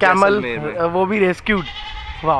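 A human voice making short vocal sounds with wavering pitch but no clear words.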